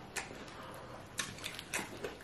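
Quiet chewing of a bite of air-fried chicken drumstick, with a few faint, sharp mouth clicks scattered through.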